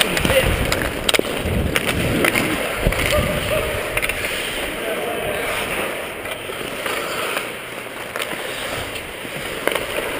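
Ice hockey skates scraping and carving across the ice close up, with occasional sharp clicks from sticks and puck.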